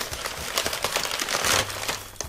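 Brown packing paper crinkling and rustling as it is unwrapped by hand, a dense run of small crackles that gets louder about one and a half seconds in.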